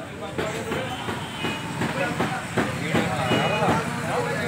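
Indistinct voices of people talking in the background, over a steady low hum.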